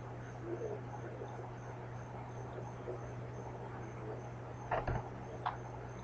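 A man drawing on a tobacco pipe: faint puffs and mouth noises, with a short cluster of clicks and pops about five seconds in, over a steady low electrical hum. The pipe is packed too tight and doesn't hold its coal well, as the smoker puts it.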